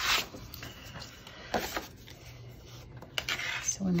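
Paper cardstock being handled and slid on a table: three short rustles, one at the start, one about a second and a half in and one just past three seconds.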